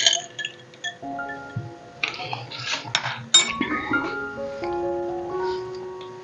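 Background music of held, stepping notes, over which a metal spoon clinks a few times against ice cubes and glass while a drink is stirred, about two to three and a half seconds in.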